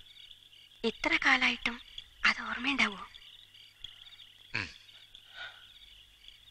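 A woman weeping, her voice breaking into short, falling cries about a second in, again from about two to three seconds, and briefly near five seconds. Under it runs a steady, pulsing chirp of night insects.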